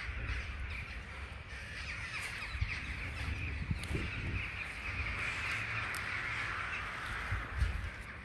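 A flock of birds calling all at once in a dense, continuous chorus that swells in the middle, over a low rumble with a few dull thumps from someone walking.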